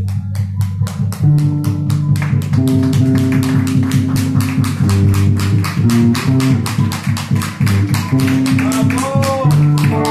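Live band playing: drums with rapid, even strokes over held bass and electric guitar notes. A note bends up and back down near the end.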